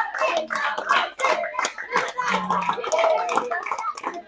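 A group of people clapping their hands, with several voices over the claps.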